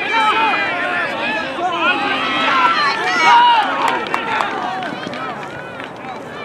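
Many voices shouting over one another as rugby players and sideline onlookers call out during open play; no single call stands out as clear words.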